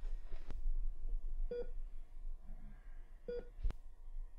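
Hospital patient monitor beeping slowly, a short single-pitched beep about every 1.7 seconds, heard twice, over a low steady hum. A sharp click comes near the end.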